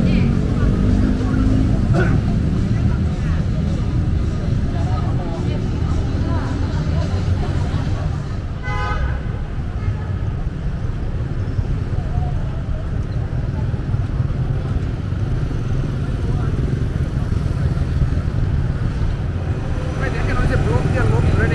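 City street traffic: a steady low rumble of passing cars and motorcycles, with voices of passersby here and there and a short horn toot about nine seconds in.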